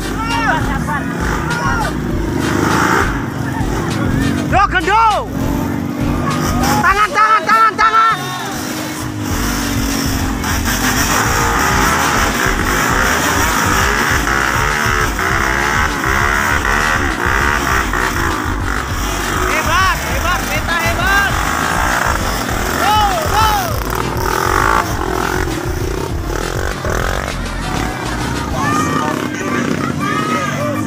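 Off-road dirt-bike engines running and revving under load on a muddy climb, with people shouting over them several times.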